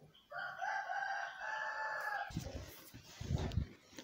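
A rooster crowing once, a single call of about two seconds. A few low thumps follow in the second half.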